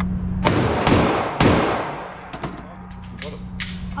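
Gunshots echoing in an indoor shooting range: three loud shots about half a second apart in the first second and a half, and a fainter one near the end, over a steady low hum.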